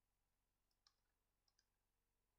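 Near silence, broken by three faint, brief clicks: one about a second in and two close together a little later.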